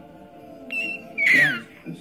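A baby's high-pitched squeal, a short cry that slides down in pitch just past the middle, the screechy kind of noise that earns her the nickname 'pterodactyl'.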